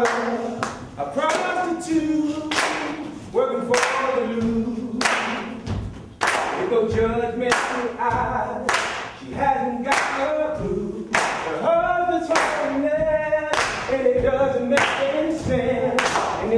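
A group of voices singing unaccompanied, with hand-claps keeping a steady beat.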